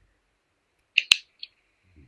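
A sharp click about a second in, with a couple of short crackles either side of it, followed by a faint steady high hum.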